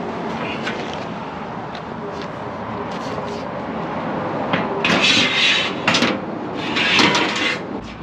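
A metal motorcycle-trailer loading ramp being handled and stowed, giving three short scraping, clanking bursts between about five and seven seconds in, over a steady background hum.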